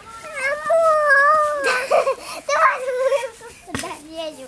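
A young child's high-pitched whining cry: one long drawn-out wail, then shorter, breathier cries, with a brief knock near the end. The child is upset in a squabble with another child.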